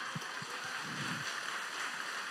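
Low, steady hiss of room noise picked up through the hall's microphones, with a few faint low knocks in the first second or so.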